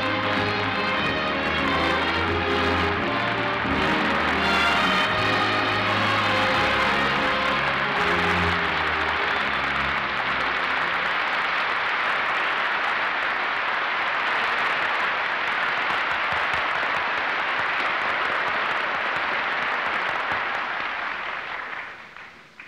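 An orchestra plays walk-on music over audience applause. The music ends about ten seconds in, and the applause carries on alone, dying away near the end.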